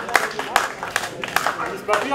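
A small crowd clapping, the claps scattered and thinning, with voices talking underneath.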